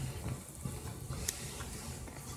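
Low, steady background noise with a low hum and a faint click a little after a second in.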